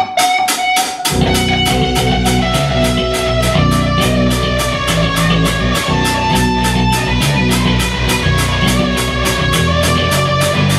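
Electric guitar and electric bass playing a heavy, fast metal riff together. High picked guitar notes ring over it, and a heavy low end fills in about a second in, with an even pulse of about four to five strokes a second.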